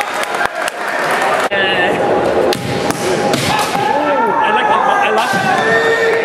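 Kendo fencing: sharp cracks of bamboo shinai strikes and stamping feet, clustered in the first second and a half. Then comes a stretch of overlapping, gliding kiai shouts from fencers echoing around a large gym hall.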